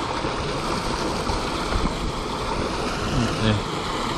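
Water rushing steadily out of a corrugated metal culvert pipe into a river.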